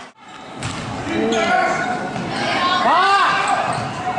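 Basketball game sound in a gym: a ball bouncing on the hardwood court, sneakers squeaking, and voices from players and the crowd. The sound cuts out for a moment at the start and returns within about half a second, with a couple of sharp squeaks about three seconds in.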